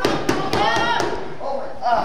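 About four sharp smacks in the first second, with voices calling out among them.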